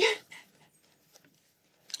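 A man's short voiced sound right at the start, then near silence with a few faint small ticks.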